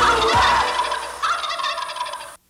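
Turkey gobbling twice, a rattling, warbling call used as a sound effect that closes the theme music. The second gobble starts a little past halfway.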